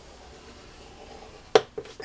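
A single sharp click about one and a half seconds in, followed by a couple of softer taps: a bone folder knocking against a plastic scoring board as it comes off a freshly scored line in card.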